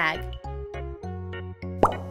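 Light children's background music with a steady, repeating low bass line. Near the end comes one short, quick upward-sweeping cartoon 'pop' sound effect, the loudest sound here, as the ball picture pops out of the bag.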